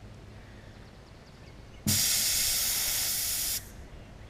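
Gravity-fed spray gun on a compressed-air hose triggered once, hissing for just under two seconds, then cut off sharply: paint thinner being sprayed through to clean the gun.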